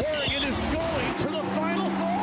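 The audio of a sports highlight reel, cutting in abruptly from silence: game sounds with voices over them. A steady low tone enters about a second in.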